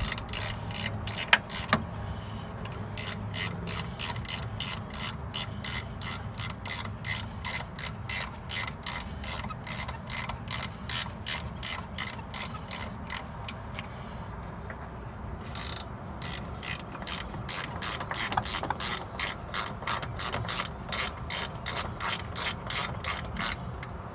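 Hand socket ratchet clicking as it tightens a brake caliper bolt, about three clicks a second in steady runs, with a short break a little past halfway.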